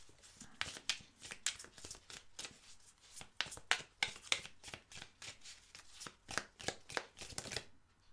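A deck of round oracle cards being shuffled by hand: an irregular run of quick card slaps and flicks that stops just before the end.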